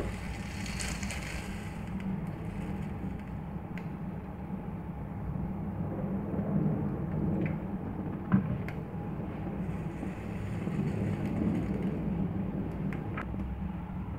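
Cooking oil is poured into an empty aluminium wok for about the first second or two, followed by a steady low rumble. A single sharp click comes about eight seconds in.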